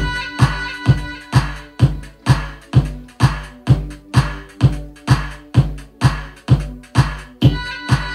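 Electronic dance track starting abruptly on DJ decks, with a steady four-on-the-floor kick drum at a little over two beats a second under sustained synth notes.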